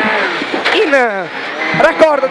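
Peugeot 208 R2B rally car's naturally aspirated four-cylinder engine, heard from inside the cabin, with its revs falling steadily under braking for a tight left hairpin. Near the end the revs rise sharply as the car drops into first gear.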